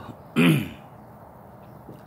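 A man clears his throat once, briefly, with a short falling vocal sound.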